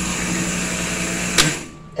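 Electric blender with a glass jar running steadily, churning white sugar and molasses into brown sugar. About one and a half seconds in there is a click and the motor cuts off.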